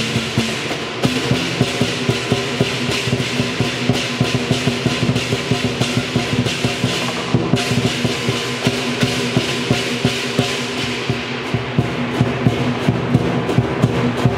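Chinese lion dance percussion: a drummer beats fast on a set of five large drums, with hand cymbals crashing and a gong. The cymbals break off briefly about halfway, and near the end the beat settles into distinct, regular strokes of about three to four a second.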